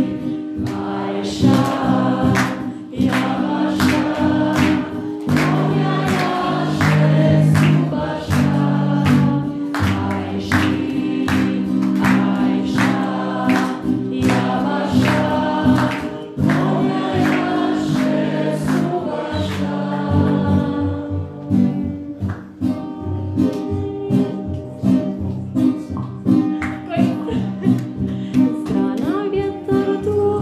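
A group of people singing a song together with a live guitar and a steady strummed beat.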